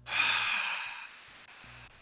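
A man's sigh: a breathy exhale close to the microphone that fades away over about a second.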